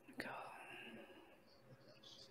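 Near silence: a soft click, then a faint whispered voice fading away within the first second.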